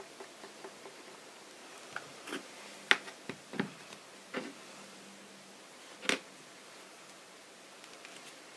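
Scattered light taps and knocks from hands handling craft materials on a cutting mat: a plastic glue bottle set down, and paper and lace being pressed and pulled. The sharpest knock comes about three seconds in, another about six seconds in.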